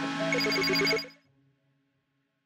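Electronic outro jingle with rapid, evenly repeated beeping tones over rising sweeps. It fades out quickly about a second in, leaving near silence.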